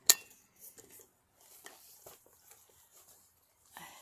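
A sharp metallic click with a brief ring as a stainless steel water bottle is clipped onto a metal swivel snap hook, followed by faint handling rustles and small clicks.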